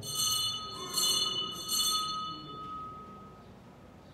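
Altar bells rung three times, about a second apart, with the ringing fading away over the next few seconds. This is the bell that marks the elevation of the host at the consecration.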